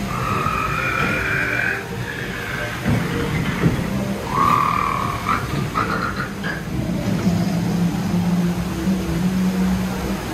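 Splash Mountain log flume ride audio heard from a moving log: a steady low hum with short, high-pitched calls, one lasting nearly two seconds at the start and a few shorter ones about halfway through.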